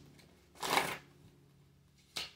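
Tarot cards being gathered in the hands: a single soft swish of cards lasting about half a second, a little under a second in, with faint room tone around it.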